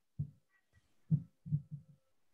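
A faint, muffled voice over an online call, a few low syllables in quick succession, with the higher tones of speech missing.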